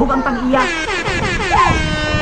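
High-pitched excited shrieking from people, sliding down in pitch and then held on a steady note near the end.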